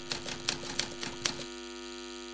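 Typewriter-style key-clack sound effect: about a dozen quick clicks over a steady humming tone. The clicks stop about a second and a half in, leaving the tone ringing on alone.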